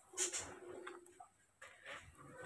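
Faint bird calls: a short, sharp call about a quarter of a second in, a held low note after it, and another short call near the end.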